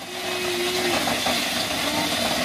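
Dried corn being ground: a steady, rough grinding noise, with a thin steady tone over it for about the first second.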